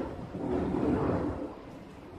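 Airplane passing overhead: a low, even rumble that swells in the first second and fades toward the end.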